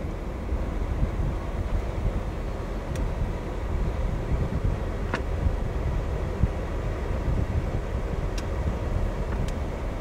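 C6 Corvette power convertible top raising, its mechanism running steadily with a few sharp clicks as the top unfolds and moves forward. Under it is the low, steady rumble of the idling LS2 V8.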